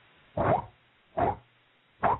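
A man's voice imitating the sound of wind turbine blades sweeping round: a breathy whoosh repeated three times, a little under a second apart.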